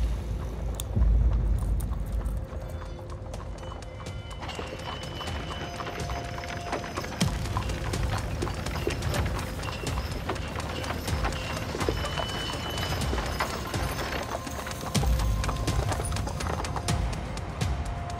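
A horse pulling a wooden cart, its hooves clip-clopping on a cobbled street, over background music.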